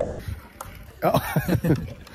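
Speech: after about a second of low background, a man says "ja" and keeps talking.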